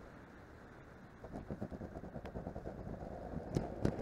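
Landing-gear wheels of an E-flite Viper 90mm EDF model jet touching down on an asphalt runway about a second in and rolling out with an uneven rattle that grows louder, with two sharp knocks near the end. The ducted fan is off for a dead-stick landing, so before touchdown only a steady airflow hiss is heard.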